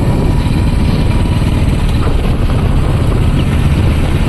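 Motorcycles running at road speed, with a steady low rumble and wind rushing over the microphone.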